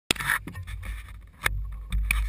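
Camera handling noise: the microphone rubbing and bumping against a jacket, with a few sharp knocks over a low rumble.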